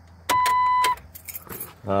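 Jeep Wrangler's dashboard warning chime: a steady electronic tone held for about half a second, with the ignition on and the engine off. It is followed by a few light clicks and small rattles.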